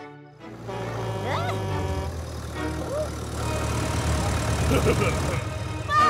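Cartoon soundtrack: a steady low machine-like rumble starts about half a second in. Over it are music and a few short, squeaky, gliding cartoon voice sounds.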